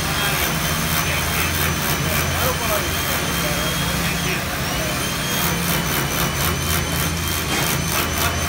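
Power drill boring overhead into the ceiling deck: its motor whine rises as it spins up, stops briefly a little past the middle, then spins up again, with a steady low machine hum underneath.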